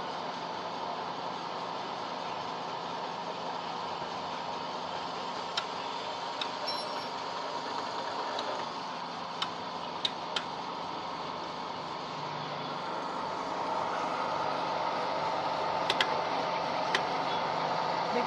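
Small electric flat-die feed pellet mill running steadily, its rollers pressing feed mash through the die into pellets, with a few sharp clicks. It gets a little louder in the last few seconds.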